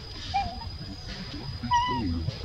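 Baby macaque giving two short, high cries: a brief wavering one about half a second in and a louder one near the end, as its mother holds it down.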